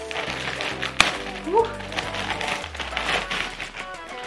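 Background music, with a clear plastic packaging bag rustling and crinkling as it is pulled open, and one sharp snap about a second in.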